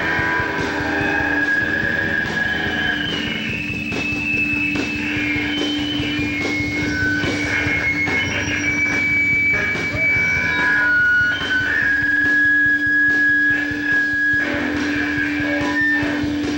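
Live rock band playing: drums hitting steadily under a low held note, with high, squealing electric guitar tones that hold and then jump to new pitches.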